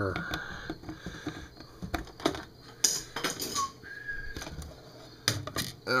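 Scattered light clicks and knocks of a plastic bug zapper racket's handle parts being handled and fitted together, with a cluster of clicks around the middle and another shortly before the end.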